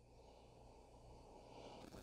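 Near silence, with faint sniffing at a glass of beer near the end.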